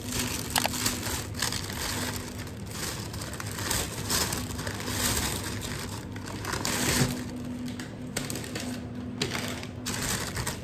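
Thin plastic shopping bags rustling and crinkling as they are handled and opened, with a few small knocks.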